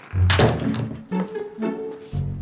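A door shutting with a loud thud just after the start, over background music with low strings.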